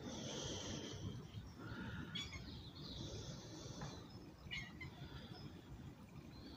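Faint high animal calls over a low steady rumble: one call at the start, another about three seconds in, and a few short chirps between.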